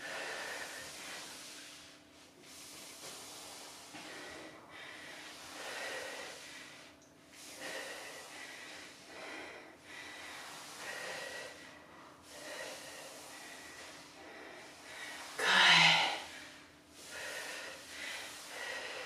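A woman breathing hard through a core workout exercise, one heavy breath about every two seconds.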